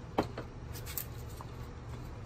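A steady low hum with a few faint clicks from tools being handled.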